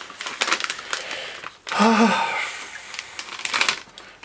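Crinkly plastic snack packet rustling and crackling as a piece of dried fish is pulled out of it. A short voiced grunt or hum comes about two seconds in, and the crackling picks up again near the end.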